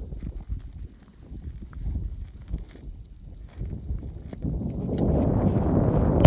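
Wind buffeting a phone's microphone, an uneven low rumble with scattered small knocks and rustles. A louder rush of noise builds over the last second and a half.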